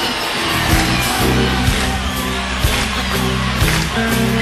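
Electric blues band playing live: a steady bass line under drum hits, with bent electric guitar notes.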